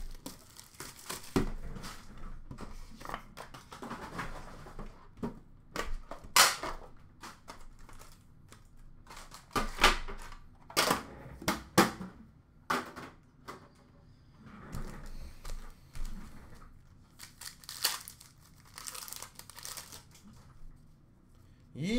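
Hockey card pack wrappers being torn open and crinkled by hand: irregular rustling broken by several short, sharp rips.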